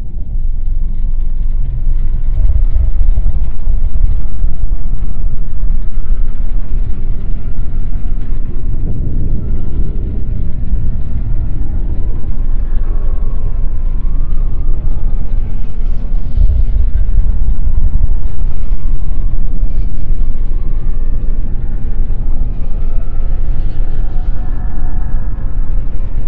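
A loud, deep, steady rumbling drone with faint held tones above it: dark ambient horror film score.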